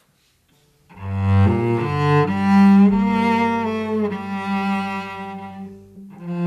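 Cello and keyboard start playing about a second in, after a brief near silence. The cello holds long bowed notes over sustained keyboard notes: the instrumental introduction to a song.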